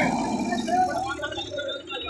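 Men's voices calling out over the running diesel engines of two tractors pulling against each other on a chain.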